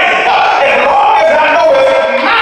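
A man singing a gospel song at full voice into a handheld microphone, amplified through the church sound system, with long held notes that bend and slide in pitch.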